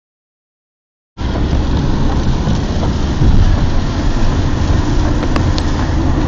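Car cabin noise at motorway speed: a steady low rumble of engine and road with the hiss of tyres on a wet road, starting suddenly about a second in after silence.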